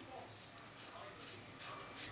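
Merkur slant safety razor scraping through lathered stubble on the cheek, heard as several short, faint scratching strokes.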